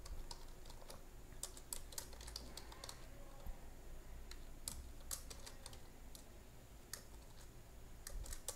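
Typing on a computer keyboard: faint, irregular keystrokes coming in short runs as code is entered.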